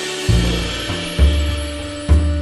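Background music: held tones, with deep low beats coming in, two of them about a second apart.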